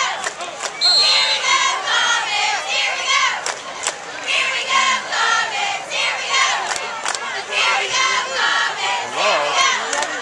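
Football crowd in the stands yelling and cheering, many voices shouting at once.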